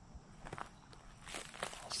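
Several footsteps on dry forest floor, short crackly steps, the later ones louder.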